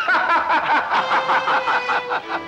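A person laughing heartily, a rapid unbroken run of ha-ha-ha, about five or six a second.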